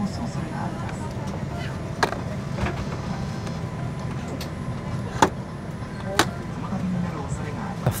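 An airliner seat's armrest tray table being slid forward and back, giving a few sharp clicks about two, five and six seconds in, over a steady cabin hum.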